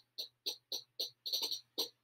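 Tambourine played upside down with its head against the player's leg, fingertips tapping over a single set of jingles for very quiet playing: short, soft jingle clicks in a Spanish rhythm, about four to five a second with some in quick pairs.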